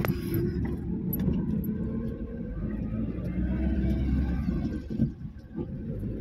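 Car on the move, heard from inside the cabin: a steady low rumble of engine and road noise, with a brief click at the start.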